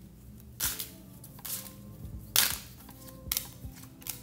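Tarot cards being drawn and snapped down onto a wooden table: four sharp snaps, roughly a second apart.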